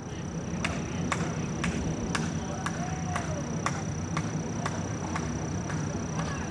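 Hoofbeats of a pony cantering on the arena footing, sharp and evenly spaced at about two a second, over a steady low outdoor rumble and a thin, steady high whine.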